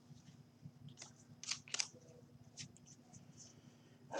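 Faint, crisp flicks and slides of trading cards shuffled by hand, with a few sharper ticks about a second and a half in.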